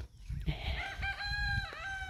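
A rooster crowing once: one long call, starting about half a second in and lasting about a second and a half, with a brief break near the end.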